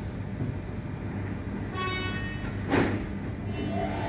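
Doors of a standing suburban electric train closing: a short warning tone sounds, then the doors shut with a loud falling hiss about three seconds in, over the steady hum of the idling train.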